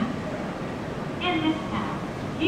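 A station PA announcement in a woman's voice, with the steady low running noise of an out-of-service Kintetsu 5209 series electric train pulling into the platform beneath it.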